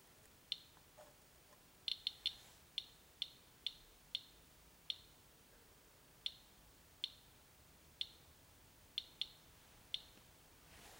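SE International Inspector EXP Geiger counter with a pancake probe clicking at random intervals, about one to two clicks a second, sometimes two in quick succession. Each click is one detected count of radiation from the ceramic floor tile and grout, the meter reading about 100 counts per minute.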